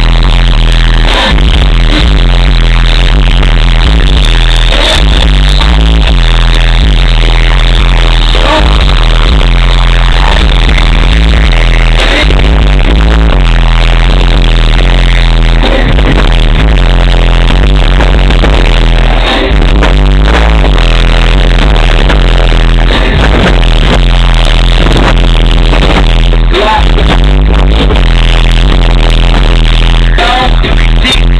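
Bass-heavy electronic music played at competition volume through a Rockford Fosgate-powered subwoofer system in a Chevy Tahoe, heard from outside the truck. It runs continuously, with deep bass pinning the recording level near full scale.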